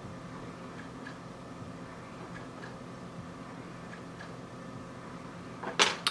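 Steady low hum and room noise, with faint short ticks that come in pairs about every second and a half. A sharp, loud click comes just before the end.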